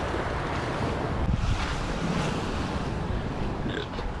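Wind buffeting the microphone over waves washing against a rock breakwater: a steady rushing with an uneven low rumble.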